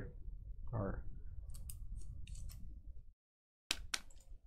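A few short, sharp clicks and scrapes from handling at a desk, with a brief murmured voice about a second in. The sound cuts out completely for about half a second near the end, an audio dropout.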